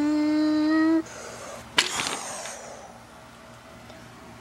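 A child's voice holding a drawn-out 'Mosh' on one slightly rising note, ending about a second in. Near the middle comes a single sharp clack with a short rattle after it, as a small plastic Gogo's Crazy Bones figurine strikes a wall of wooden toy blocks.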